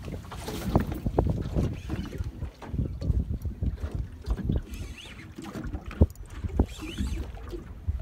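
Wind rumbling on the microphone over a small fishing boat, with water against the hull and irregular knocks and handling bumps. The sharpest knock comes about six seconds in.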